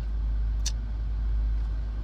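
Steady low rumble inside a car's cabin, with one short click about two-thirds of a second in.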